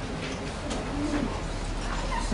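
A short, low hummed 'mm' from a person near the microphone about a second in, with a few light handling clicks over a steady electrical hum from the room's sound system.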